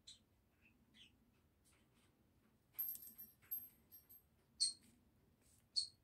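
A pet bird chirping faintly: a high thin whistle lasting about a second, then two short chirps near the end. Faint soft ticks of a pen writing on sticker paper come in the first couple of seconds.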